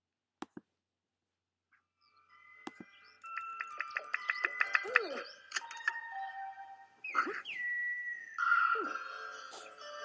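Two short clicks, then, from about two seconds in, the title music of an animated educational TV programme. It has quick repeated notes and whistle-like gliding tones.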